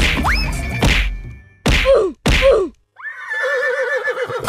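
Cartoon sound effects over the tail of the music: a rising whistle, then two whacks about half a second apart, each with a falling pitch, then a wavering, warbling tone near the end as the cartoon man falls dizzy.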